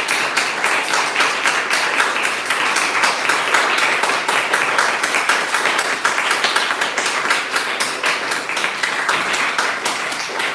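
Small audience applauding steadily, individual hand claps packed densely together.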